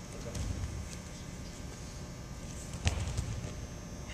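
A single dull thump on a cushioned wrestling mat about three seconds in, as a wrestler drops to his knee to shoot a single-leg takedown, over the low background hum of a large gym.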